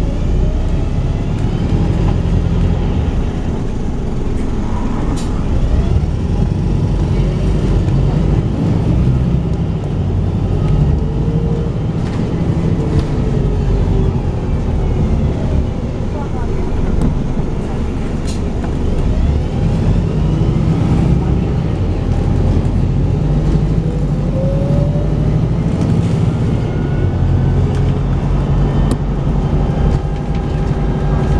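Volvo B5TL double-decker bus's four-cylinder diesel engine heard from on board, worked hard in the way enthusiasts call thrash. Its note rises and falls repeatedly as the bus pulls away and eases off through the bends.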